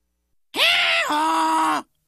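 A cartoon donkey's bray: one loud two-note hee-haw, a held high note that drops to a lower held note about halfway through, lasting a little over a second and cutting off sharply.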